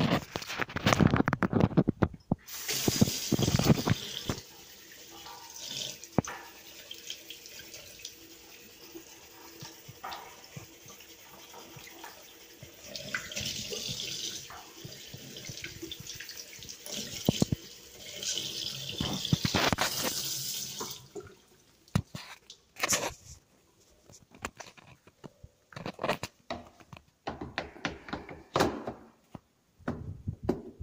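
Kitchen tap running water onto a condenser tumble dryer's plastic lint filter as it is rinsed, the splashing rising and falling as the filter is moved under the stream. The water stops about two-thirds of the way in, followed by scattered clicks and knocks of the plastic filter being handled.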